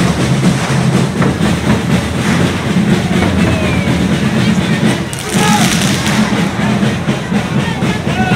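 Correfoc fireworks spraying sparks with a loud, steady hiss and crackle over a shouting crowd, with festival drums beating underneath.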